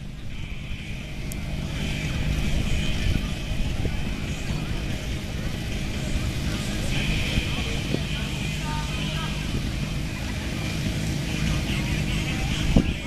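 Engine of a portable fire pump running steadily, a low even hum, with people's voices in the background.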